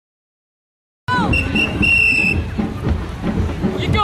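Silence for about a second, then outdoor game sound cuts in suddenly: a referee's whistle gives two short peeps and one longer blast, over children shouting and a steady low rumble.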